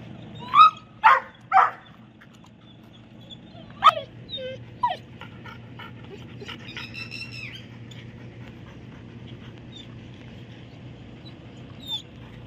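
Police dogs barking and yelping: three quick barks in the first two seconds, another loud bark about four seconds in with two smaller yelps after it, then a higher, drawn-out whine around seven seconds.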